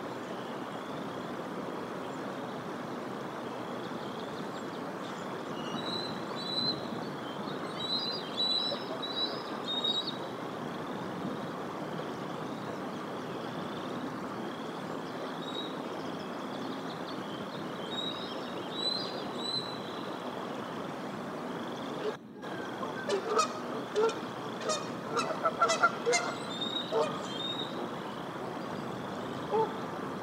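Canada geese honking in a rapid run of loud calls for a few seconds, starting about two-thirds of the way in, just after a momentary dropout in the sound. Before that there is only a steady background hiss with faint high chirps of small birds.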